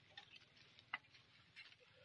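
Near silence: faint outdoor background with a few light ticks and one sharper short click about a second in.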